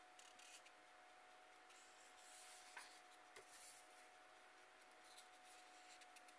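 Paper rustling as a comic book page is turned by hand: a soft brushing about two seconds in, then a brief, louder swish about three and a half seconds in.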